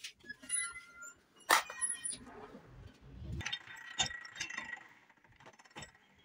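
Small pieces of silver strip clinking against a steel bench block as they are handled. One sharp metallic clink comes about one and a half seconds in and a lighter one about four seconds in.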